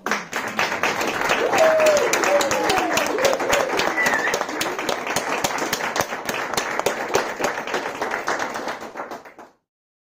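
A room of guests applauding, with a few voices calling out over the clapping in the first few seconds. The applause cuts off suddenly near the end.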